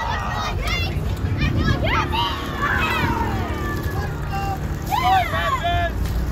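Children shouting and calling out in high voices, several overlapping cries, over a steady low rumble.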